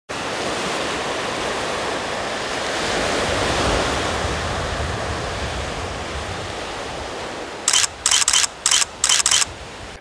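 Sea surf washing in a steady rush that swells and slowly fades, then a quick run of about six or seven camera shutter clicks near the end.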